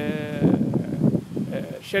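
A man speaking, opening with a drawn-out hesitation vowel held for about half a second before his words go on.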